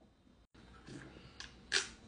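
Faint handling sounds of a glass mug with ice being picked up to drink: after a moment of silence, a few light clicks and one short clink near the end.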